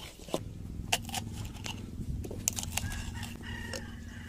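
Stone pestle working roasted green chiles against a grooved clay chirmolera, with scattered sharp clicks of stone on glazed clay. A steady low drone runs underneath.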